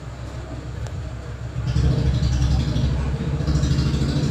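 Low engine rumble of a passing motor vehicle, growing louder about halfway through.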